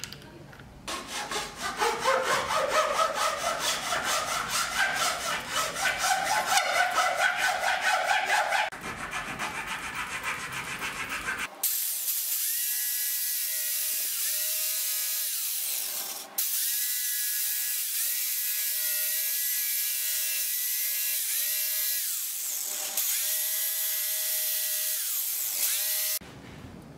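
Electric jigsaw sawing through a wooden board: a rough, rapidly chattering cut, then a steady motor whine. In the second half the motor slows and picks up again twice.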